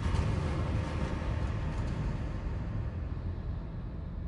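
A low rumbling drone with a noisy haze above it, slowly fading out: the tail of a dark, ominous background music track.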